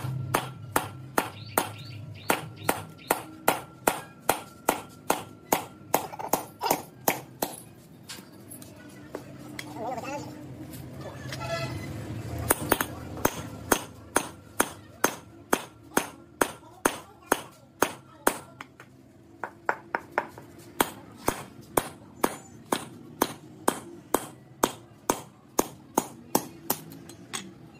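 Metal hammer tapping a tool set on the valve spring retainers of a three-cylinder cylinder head, sharp metallic strikes about two to three a second, coming in runs with a pause in the middle. This is the valves being stripped, the retainers knocked to free the collets.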